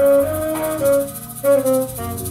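Saxophone playing a melody of held notes, with a brief break just past the middle, over recorded backing music with a bass line and a steady high tick.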